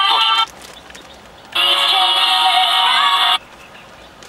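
Television broadcast audio from a portable digital TV receiver: music with singing that cuts out abruptly just under half a second in, comes back about a second and a half in, and cuts out again about three and a half seconds in as the receiver switches channel and searches for a signal.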